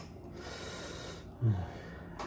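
A man breathing out audibly, then a short low grunt about one and a half seconds in.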